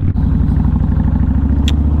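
Kawasaki VN1600 Mean Streak's V-twin engine running at a steady pitch while the motorcycle cruises at an even speed.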